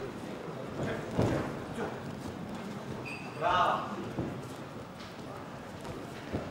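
Ringside sound of a live boxing bout: scattered knocks of gloved punches and footwork on the ring canvas, the loudest hit about a second in, and a man's loud shout from the corner or crowd about halfway through, over the murmur of the hall.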